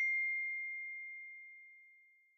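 A single high, bell-like ding from a logo sting: one steady tone that rings on and fades away, dying out near the end.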